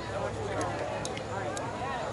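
Indistinct conversation among people chatting, with a few short, faint ticks.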